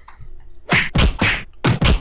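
Four sharp, heavy percussive hits in two close pairs, each with a deep low end.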